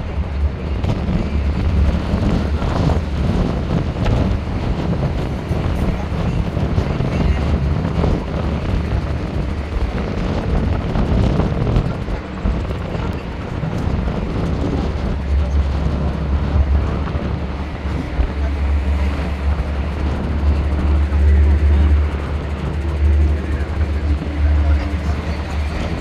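Wind buffeting the microphone on the open top deck of a moving double-decker bus, over the bus's low rumble and passing traffic; the rumble grows heavier in the second half.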